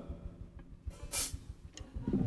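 A pause in stage talk before a live performance: faint hall and audience noise, with a short hiss about a second in and a faint click near the end.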